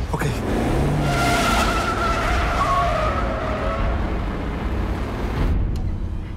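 A police car accelerating hard, its engine revving and its tyres squealing for about three seconds. The sound cuts off suddenly near the end.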